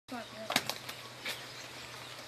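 A short gliding pitched call or voice fragment at the start, then four sharp clicks spread over the next second, over a steady low hum and outdoor background noise.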